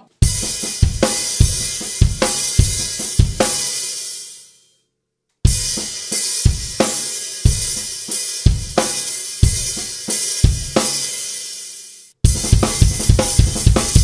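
Drum kit played: a groove of snare accents every three sixteenth notes, each followed by two quiet snare ghost notes, over hi-hat and bass drum. The playing rings out and stops about four and a half seconds in, starts again a second later, and breaks off abruptly for a moment near the end before going on.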